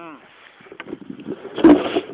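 A person's voice gliding briefly at the start, then a loud, short noisy burst near the end.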